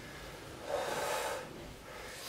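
A person's short, breathy exhale, heard once about a second in.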